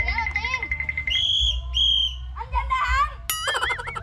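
A referee's whistle trilling on one steady pitch, cutting off about a second in, followed by two short, higher whistle blasts. Children's voices follow.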